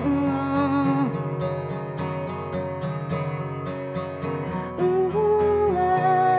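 Slow live acoustic music: an acoustic guitar played in steady strokes under long held melody notes, with a new wavering melody line coming in near the end.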